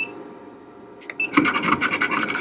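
Graphtec CE7000 cutting plotter running a test cut on sticker paper to check the blade depth for a kiss cut. About a second and a half in, a whirring motor whine with rapid ticking starts as the cutting head moves and cuts.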